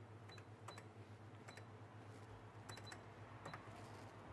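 Faint clicks and short high beeps from a shop's checkout till as items are rung up, a handful spread across the few seconds, over a low steady hum.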